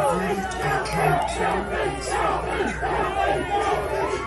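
Crowd of demonstrators shouting and cheering, many voices overlapping without a break.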